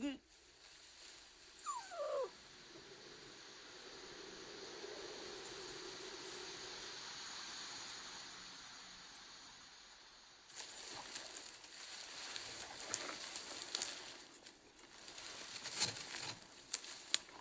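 Wind through a reed field gives a steady soft rush, after a short falling cry about two seconds in. From about ten seconds in, dry reed stalks rustle and crackle in quick irregular snaps as someone pushes through them and crouches low.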